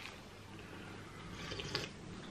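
Faint mouth sounds of eating and drinking: chewing toast, then a short sip from a mug near the end.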